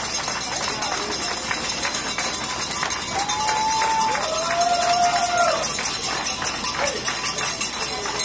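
Small crowd of fans clapping and cheering, with two long drawn-out cheering calls a few seconds in.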